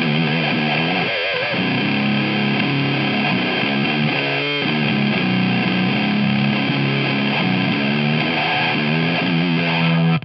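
Electric guitar played through a Laowiz Cyst Mode filter-fuzz pedal: a heavily distorted, fuzzy, sustained wall of notes, with a brief warble in pitch about a second in.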